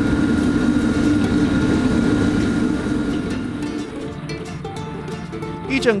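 Steady low roar of a restaurant kitchen's gas wok range with a faint high whine, easing off after about three seconds as soft plucked-guitar background music comes in.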